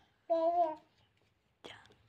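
A toddler's voice: one short, steady vocal sound, then a brief breathy sound near the end.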